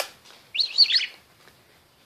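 A small pet parrot chirps once, about half a second in: a short call of quick rising and falling notes.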